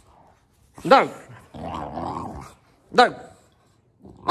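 Boxer puppy play-growling while nipping at an ear: two short yaps that rise and fall in pitch, about a second in and about three seconds in, with a rough growl between them.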